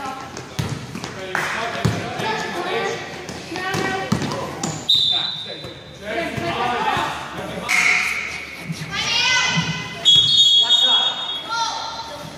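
Basketball game in a large echoing gym: players' and spectators' voices calling and shouting, a ball bouncing on the court, and two brief high-pitched squeals, about five and ten seconds in.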